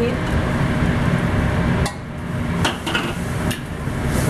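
A metal ladle and spatula clinking against a steel wok a few times as soup is scooped out, over a steady low rumble.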